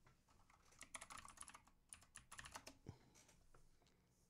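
Faint keystrokes and clicks on a computer keyboard: a quick run of taps about a second in, another cluster around two to three seconds in, then a few scattered clicks.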